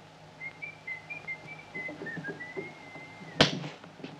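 A person whistling a short phrase: a few quick notes, then one longer held note. About three and a half seconds in, the whistle is cut off by a single loud, sharp thump.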